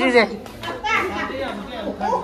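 Children's voices: young children talking.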